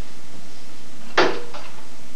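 A single sharp knock about a second in, fading quickly, with a steady background hum throughout.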